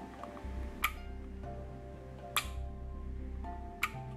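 Small relays clicking as the logic-gate inputs are switched, three sharp clicks about a second and a half apart, over background music.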